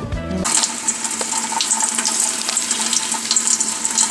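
Kitchen faucet's pull-down sprayer running, a steady hiss of water spraying onto the leaves of a pothos plant in a stainless steel sink, starting about half a second in.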